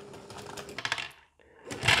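Lego motor running with a rapid series of light plastic clicks from the gear train and balls, which cuts out a little past halfway as the batch count reaches 13 and the motor stops to switch into reverse.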